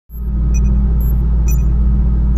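Loud, steady low electronic drone, starting abruptly at the opening, with short high blips scattered over it: countdown intro sound design.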